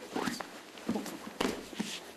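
Two grapplers in gis doing a jiu-jitsu butterfly-guard sweep at full speed: fabric swishing and bodies scuffing and landing on the mat. There are several short thumps and scuffs, the loudest about one and a half seconds in.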